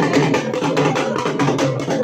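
Procession drums beaten in a fast, steady rhythm of rapid, even strokes.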